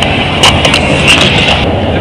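Steady road and engine noise heard from inside a moving van's cabin, with a few brief clicks about half a second in.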